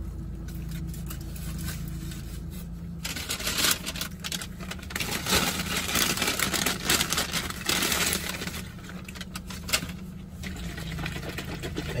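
Brown paper bag rustling and crinkling as it is handled, starting about three seconds in and dying down near the end, over a steady low hum.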